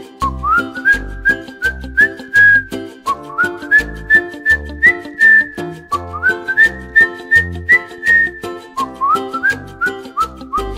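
Whistled melody over a children's song's instrumental backing with bass and a steady beat. Each phrase slides up into its notes and ends on a held high note, three phrases in all.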